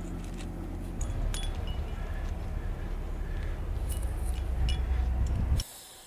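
Metal climbing hardware, cams and carabiners, clinking now and then over a steady low rumble on the camera microphone. The sound cuts off suddenly shortly before the end.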